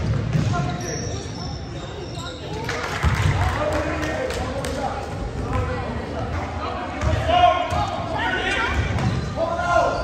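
A basketball bouncing on a hardwood gym floor in repeated dull thuds during play. Voices of players and spectators shout over it, echoing in a large gym.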